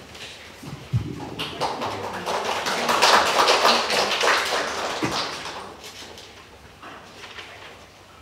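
Audience applause, many hands clapping: it starts about a second in, is loudest around three seconds in, then dies away.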